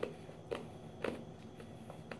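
Plastic screw cap being twisted shut on a plastic bottle of sterile water: a few soft clicks, about half a second apart, from the cap and fingers, with fainter ticks near the end.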